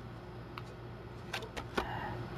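Felt-tip markers being handled and used on paper: quiet scratching, then a few small sharp clicks in the second half, over a steady low hum.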